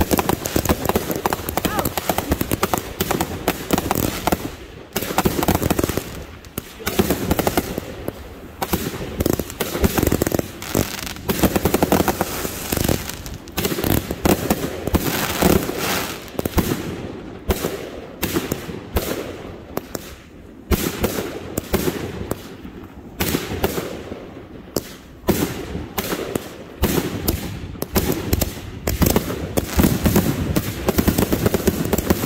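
Fireworks firing in quick succession: shots and aerial bursts with crackling stars, going almost without a break and dipping briefly a few times.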